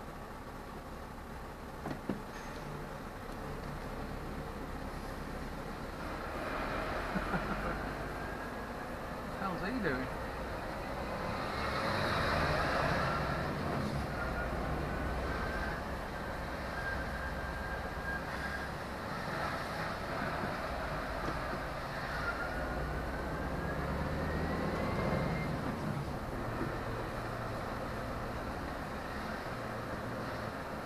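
Lorry engine and road noise heard inside the cab as the truck drives slowly along a wet street, with a thin whine that rises in pitch twice as it picks up speed.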